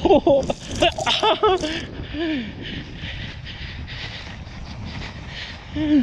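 A wooden sled running down a packed-snow track, its runners making a steady scraping hiss. A person's voice breaks in with short exclamations in the first two seconds and once more near the end.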